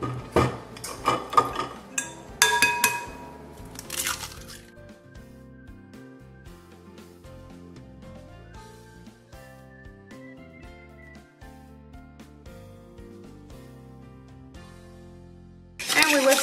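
Eggs cracked on the rim of a glass mixing bowl: a run of sharp cracks and taps in the first four seconds, one leaving the glass briefly ringing. Quiet background music plays underneath and carries on alone after the cracking stops.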